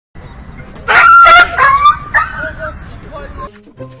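A dog barking, mixed with high-pitched cries, loudest about a second in.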